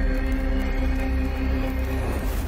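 Intro music: sustained chords held over a deep, steady bass drone.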